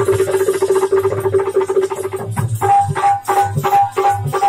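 Live folk music: a harmonium holds a steady note over a low drum beat, with sharper percussion strokes in the second half.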